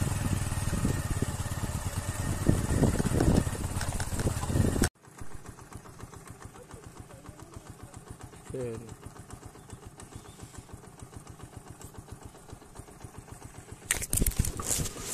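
Small motorcycle riding along a wet road: engine and wind noise on the microphone, loud for about five seconds, then dropping suddenly to a quieter, even engine pulse.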